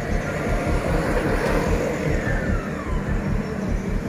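Road noise from a car driving past on a street, over background music with a steady low beat.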